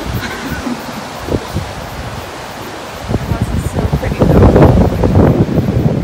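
Wind buffeting the camera microphone over the wash of surf, the gusts getting louder and rougher about three seconds in.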